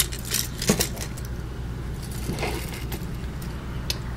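Metal earrings clinking and jingling on the wooden racks of a jewelry box as the racks are handled, with a few short sharp clicks, several in the first second and more later on.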